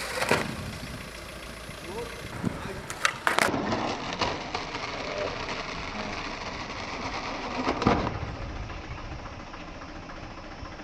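A skateboard striking asphalt in a few sharp knocks: one near the start, two close together about three seconds in, and one near eight seconds, over a steady outdoor background.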